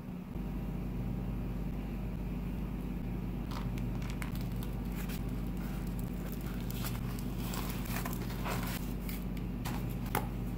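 Flour tortillas rustling and crackling as they are handled and folded on a wooden cutting board, with scattered small clicks from about three and a half seconds in, over a steady low hum.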